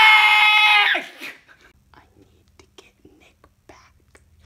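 A teenage boy screaming: one loud, long scream held on a single high pitch that breaks off about a second in, then faint breathing and small rustles.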